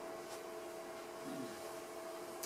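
Quiet room tone with a faint, steady hum of a few low tones.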